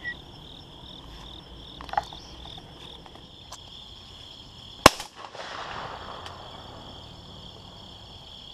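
A single shotgun shot about five seconds in, its report rolling away across the field for a second or two, over a steady high drone of insects.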